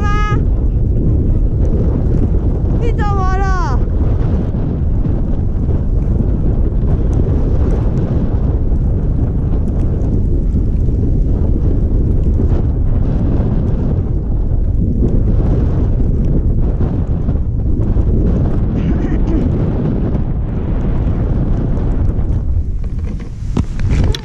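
Wind rushing over a helmet-mounted action camera's microphone, along with skis running on snow, during a steady downhill ski run. About three seconds in there is a brief high, wavering vocal call. The rush drops away near the end.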